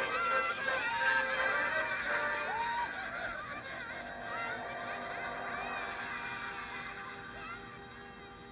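Background music: an orchestral song with wavering, gliding vocal and string lines over sustained tones, gradually getting quieter.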